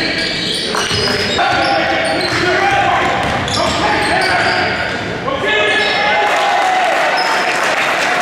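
Basketball game on a hardwood gym court: a basketball bouncing and sneakers squeaking in many short high chirps as players scramble for a rebound and run the floor, with players and spectators calling out.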